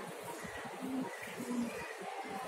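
Two short, low coos about half a second apart, over faint room noise.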